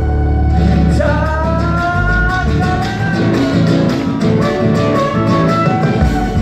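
Live band music through a stage sound system: electric guitar, bass and drums with steady cymbal strokes, and a long held melody line entering about a second in.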